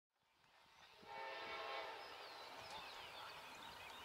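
Faint, distant horn of an approaching Amtrak passenger locomotive, a held chord coming in about a second in, with birds chirping over it.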